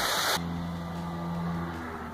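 A large splash into pond water, its rushing spray cutting off about a third of a second in, followed by a steady low hum of held tones.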